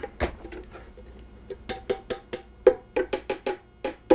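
A metal tomato can knocked and tapped repeatedly against the rim of a blender jar to shake out the last of the canned tomatoes: a run of irregular sharp knocks, sparse at first and quicker in the second half.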